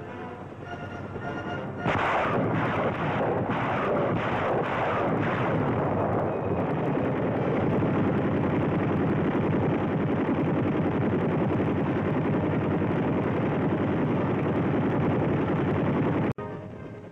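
Machine-gun fire: a sudden loud start about two seconds in with several separate bursts, then dense continuous firing.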